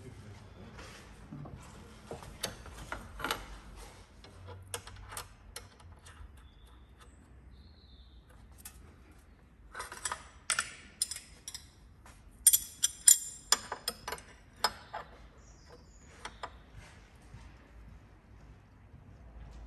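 Metal hose couplings and a steel wrench clicking and clinking against transmission line fittings as the flush-machine hoses are disconnected. The sharp clicks are scattered throughout, with denser clusters about ten and thirteen seconds in.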